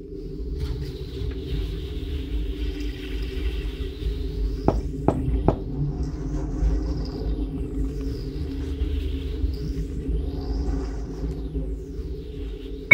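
Dark ambient horror score: a steady low drone over a deep rumble, with slow sweeping swells up high. Three sharp clicks come in quick succession about five seconds in.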